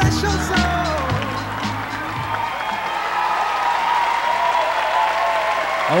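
A pop-soul song playing for a swing dance ends about a second in, its beat cutting off, and an audience claps and cheers while a last sung note lingers over the applause.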